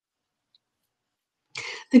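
Silence for about a second and a half, then a single short cough just before speech begins.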